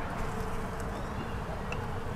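An insect buzzing steadily at one pitch, over a low outdoor rumble.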